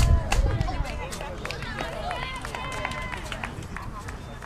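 Several voices shouting and calling out across an open soccer field, unintelligible, some held as long calls in the second half. A sharp knock and a low rumble on the microphone come right at the start.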